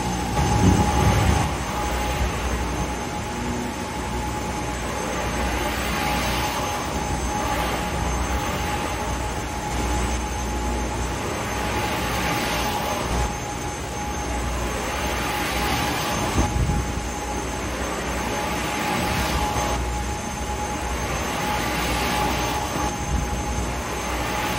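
A bank of electric fans blowing and the motor-driven test rotors spinning at about 3600 rpm. The sound is a steady whir and rush of air with a constant high-pitched hum over it.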